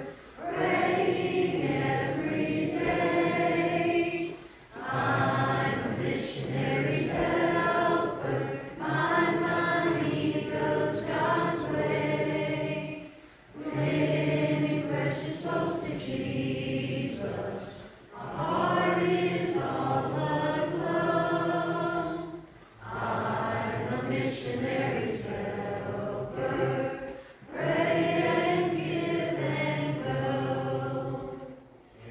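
Church choir singing a hymn together, in phrases of about four to five seconds with short breaths between them.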